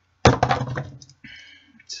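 Scissors working on the cotton wick of a rebuildable tank's coil deck: a sharp snip or knock about a quarter second in, then softer scraping and a small click near the end.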